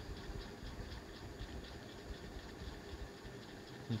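Faint scratching of a ballpoint pen writing on paper.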